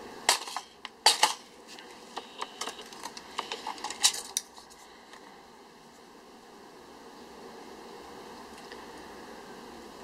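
A ferrocerium fire-starter rod struck over and over with a striker to throw sparks onto tinder. It gives sharp metallic scrapes and clicks, a few loud strokes in the first second and a half, then a quicker run of lighter ones ending in a loud stroke about four seconds in. A faint steady background remains afterwards.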